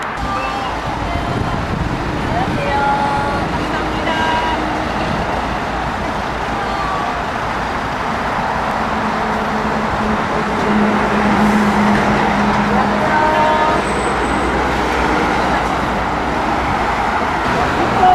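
Road traffic running steadily past on a busy street, with voices in the background.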